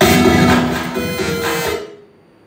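A loud burst of amplified electronic music with several sustained tones, starting suddenly and cutting off just before two seconds.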